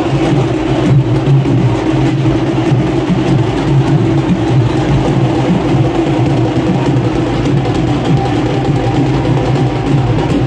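Loud, continuous procession din: drum-led festival music mixed with a steady low drone.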